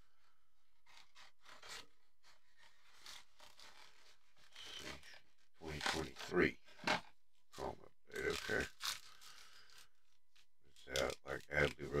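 Cardboard retail box being pried open and foil-wrapped trading card packs slid out and handled: a string of short, intermittent scrapes and rustles.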